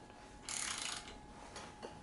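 Ratchet wrench clicking quietly in a short run about half a second in, as its handle is swung back through the free direction while tightening a bolt.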